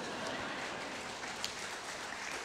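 Quiet, steady applause from an audience.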